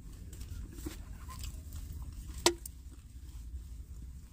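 Quiet van cabin with a steady low rumble, a single sharp click about two and a half seconds in, and faint small handling noises.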